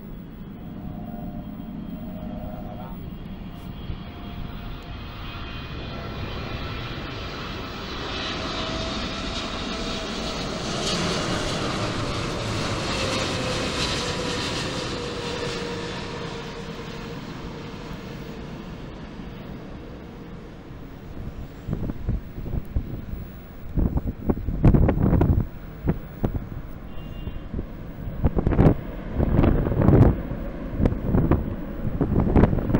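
Twin-engine Boeing 777 airliner passing low on landing approach: the jet engine noise builds to a peak a little past ten seconds in, with a whine falling in pitch as it goes by, then fades. In the last several seconds, wind buffets the microphone in gusts.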